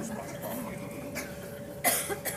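Low murmur of a seated audience in a hall, with a single short cough near the end.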